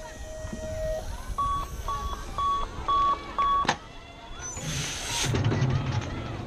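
BMX start-gate cadence: a run of short electronic beeps about half a second apart, then a bang as the start gate drops just after the last beep.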